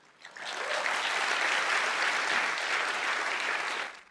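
Audience applauding. The clapping swells in within the first half second, holds steady and cuts off suddenly near the end.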